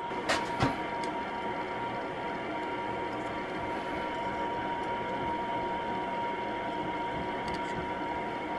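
Propane-torch forge burner running with a steady hiss and a faint constant whine, after two light clinks near the start.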